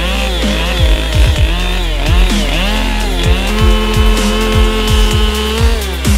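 Petrol chainsaw cutting into a wooden trunk, its engine speed dipping and recovering several times as the chain bites. Underneath, electronic music with a kick drum about twice a second.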